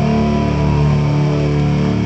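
Live heavy metal band playing an instrumental passage: held electric guitar and bass guitar chords ringing out, with one guitar note sliding slowly down in pitch.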